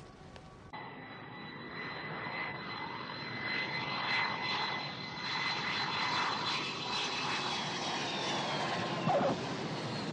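Airplane engines begin about a second in: a steady high whine over a rushing noise that grows louder. The whine dips slightly in pitch near the end, and there is a brief louder sound just before it cuts off.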